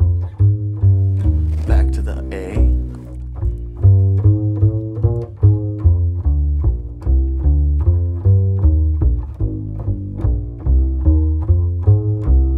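Upright double bass played pizzicato: a steady line of single plucked notes, about two to three a second, each note struck and then fading.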